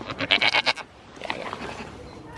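A goat bleating close by: one short, wavering bleat in the first second, followed by a fainter sound about a second later.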